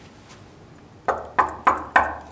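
Knocking on a wooden door: four quick, evenly spaced knocks starting about a second in.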